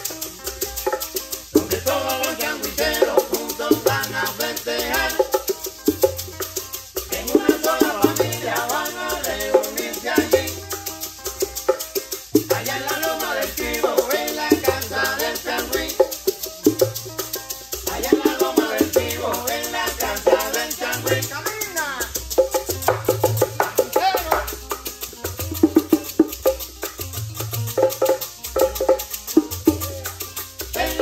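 A live changüí band playing without vocals: tres guitar melody over shaken maracas and hand drums, with deep bass notes pulsing steadily underneath.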